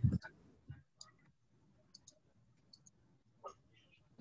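A soft low thump at the start, then several faint, short computer mouse clicks scattered over the next few seconds.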